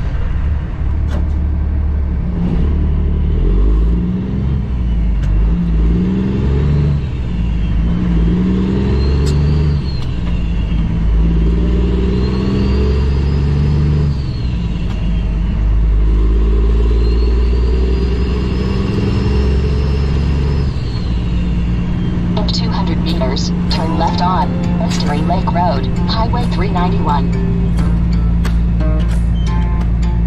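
Cummins ISX inline-six diesel of a 2008 Kenworth W900L pulling under load and working up through the gears. Its pitch climbs in steps, and a high turbo whistle rises and falls three times. About two-thirds of the way through, music comes in over the engine.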